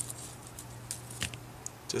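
Hand bypass pruners snipping the flowers off Dipladenia (mandevilla) stem cuttings: a few faint, short clicks over a steady low hum.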